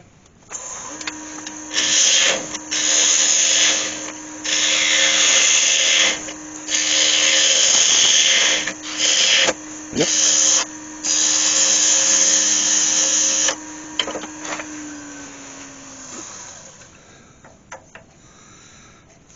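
A turning tool cutting into wood spinning on the lathe, in repeated passes of a second or two each, to hollow a small recess, over the steady hum of the lathe motor. Near the end the cutting stops and the motor hum slides down in pitch as the lathe is switched off and spins down.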